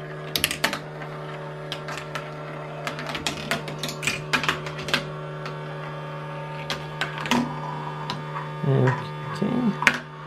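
A plastic marble run's motorised vortex launcher running with a steady hum, while a marble rolls through plastic tracks and past gear wheels and windmills. Its path makes a string of sharp clicks and knocks, thickest in the first few seconds and more scattered after.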